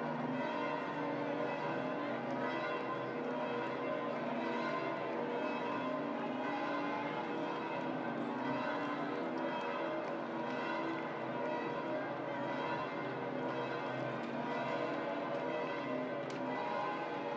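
Large church bells pealing continuously, many overlapping ringing tones at a steady level: the bells of St Peter's Basilica.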